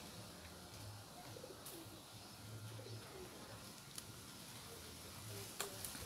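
A dove cooing faintly: short low coos repeated every two to three seconds, with a few faint clicks between them.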